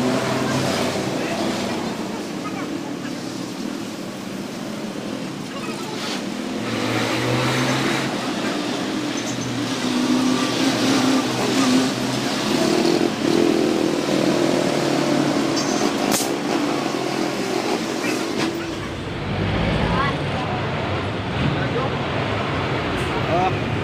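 Street traffic with people talking in the background, the words not made out. A vehicle rumbles past near the end.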